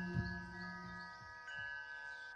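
Metal chimes ringing in long, overlapping tones, with a low tone dying away about a second in and a fresh chime struck about a second and a half in. A faint high shimmer pulses about four times a second underneath.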